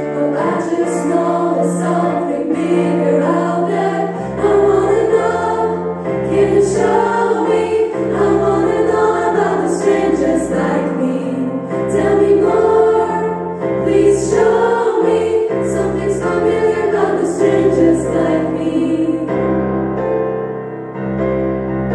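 Female vocal ensemble singing in close harmony with piano accompaniment. Low piano bass notes come in about four seconds in, and the voices stop near the end, leaving the piano.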